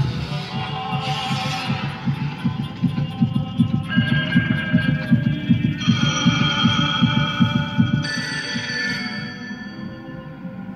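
Soundtrack of a video art installation: a fast, low, heartbeat-like pulsing, about four beats a second, under sustained electronic chords that shift at about four, six and eight seconds in.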